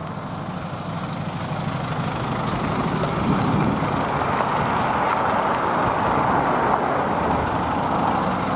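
PAZ-320412-05 Vector minibus's diesel engine with its tyres on a slushy road as it drives up and pulls in to a stop close by, growing louder over the first three seconds and then staying loud.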